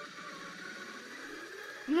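Faint, indistinct voices over a low steady hiss. A louder voice breaks in right at the end.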